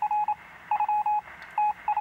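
Rapid electronic beeping at one steady pitch, the beeps coming in short irregular clusters of several each.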